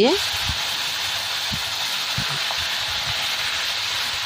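Raw prawns sizzling in hot mustard oil as they are dropped in to fry, a steady hiss that starts suddenly as they hit the oil and holds evenly.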